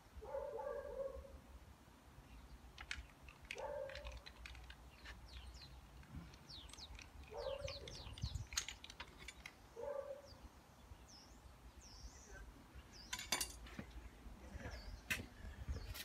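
Scattered small clicks and scrapes of hands pushing a damp-proofing rod into a hole drilled in a brick-and-stone wall, with a louder cluster of taps about thirteen seconds in. In the background a short, low animal call comes four times, about three seconds apart, and a couple of high bird chirps follow.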